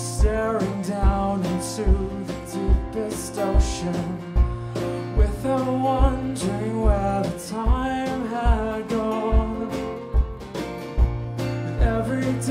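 Live band playing a slow country-folk song: strummed acoustic guitar over a steady kick drum beat, about one beat every 0.8 seconds, with a wavering lead melody line on top.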